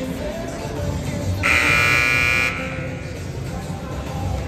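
Basketball scoreboard horn sounding once, a single buzzing blast of about a second, over music from the arena's sound system.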